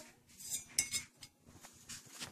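Aluminium CPU heatsinks being handled and stacked: a few light metallic clinks and taps, the sharpest a little under a second in with a brief ring.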